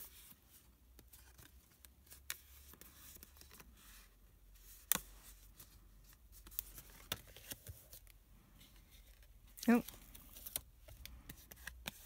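Stiff cardstock being handled and pressed together by hand: faint rustles and scattered soft clicks and taps, with one sharper click about five seconds in. A brief murmur from a voice comes near the end.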